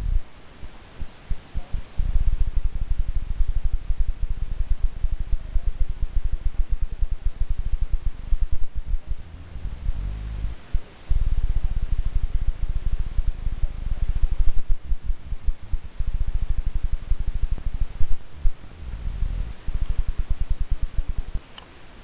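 Wind buffeting the camera's microphone: a loud, low rumble that comes in gusts, dropping away briefly in the first two seconds, about halfway through and just before the end.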